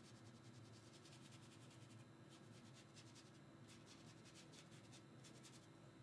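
Faint scratching of a drawing tool on paper, coming in several short runs of strokes, over a low steady hum.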